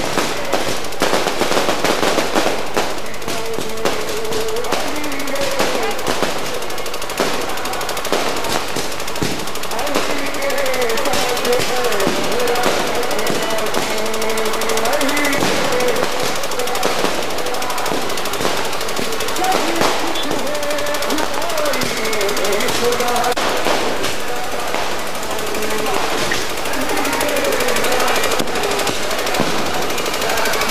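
Strings of firecrackers going off in rapid, continuous crackling, like machine-gun fire, with crowd voices over them.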